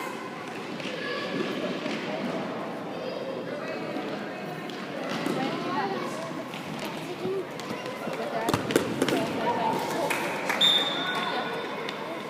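Indoor football on a sports hall court: the ball is kicked and bounces on the hard floor, with a few sharp thuds close together about eight to nine seconds in. Players' and spectators' voices carry on throughout.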